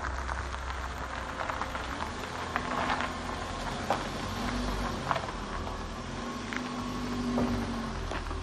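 A car driving slowly over dirt and stony ground: a low engine rumble, with scattered clicks and crackles from stones under the tyres.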